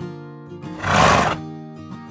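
Acoustic guitar background music, with a loud, short whinny sound effect about a second in that lasts under a second.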